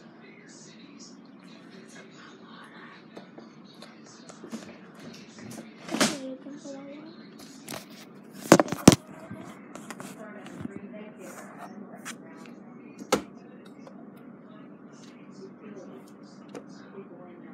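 Knocks and rubbing from a handheld phone being moved about and set down, with faint talk underneath. The loudest knocks come about six seconds in, as a quick double knock about two seconds later, and once more near the end.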